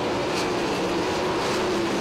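Several 410 sprint cars running at racing speed, their methanol-burning 410-cubic-inch V8 engines making a steady, even drone.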